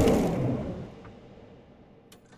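The fading tail of a cinematic impact-and-whoosh sound effect: a loud hit dies away over about a second into a low hiss.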